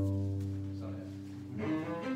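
Cello played with the bow: a low note held and fading away for about a second and a half, then the playing moves on to higher notes near the end.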